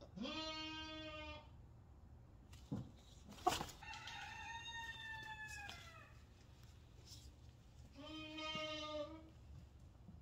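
Chickens calling: a call of about a second at the start, a longer, higher call that falls in pitch in the middle, and another short call near the end. Two sharp knocks come just before the middle call.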